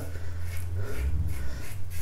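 Barbarossa double-edge safety razor scraping through one day's lathered stubble on the neck in a series of short strokes, over a low steady hum.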